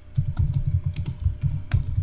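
Computer keyboard typing: a quick, even run of about ten keystrokes.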